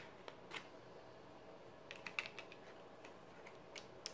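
Faint handling of tarot cards: scattered light clicks and snaps of card stock, a small cluster of them about halfway through and a few more near the end, as a card is drawn and laid on the table.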